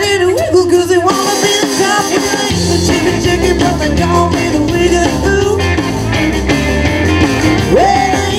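Rockabilly band playing live through a PA: electric guitars, electric bass and a drum kit. The bass and drums fill out about two and a half seconds in.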